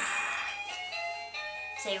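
A baby's electronic toy playing a jingle-like tune: a run of steady electronic notes that step from pitch to pitch.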